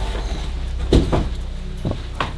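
Short rustles and crinkles of a plastic slide sheet being handled among loose papers, twice, over a steady low hum.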